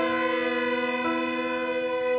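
String quartet playing slow, sustained chords over a steady low held note, the upper voices moving to a new chord about a second in.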